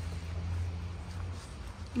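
Wind buffeting a phone's microphone outdoors: a steady low rumble that eases a little across the two seconds.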